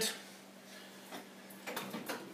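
Faint light knocks and clicks of plastic water bottles being handled and lifted out of a chest-type compressor cooler box, over a low steady hum.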